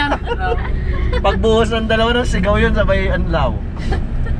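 Several people talking and laughing inside a van, over the steady low rumble of the van's engine and road noise.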